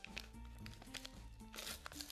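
Background music with a few short rustles and crinkles of paper stickers and a torn sticker-pack wrapper being handled, loudest near the end.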